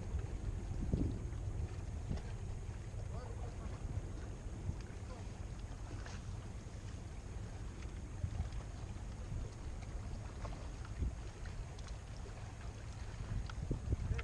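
Wind buffeting the microphone: an uneven low rumble, with a few faint clicks over it.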